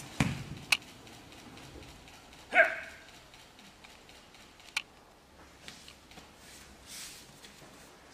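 A single short, loud, voice-like cry about two and a half seconds in, with a few sharp clicks or knocks before and after it, in a reverberant hall.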